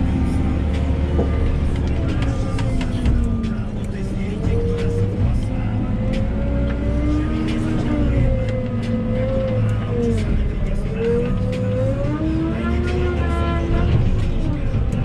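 Diesel engine of a JCB telehandler heard from inside its cab, its revs rising and falling again and again as the machine works, with scattered clicks and knocks.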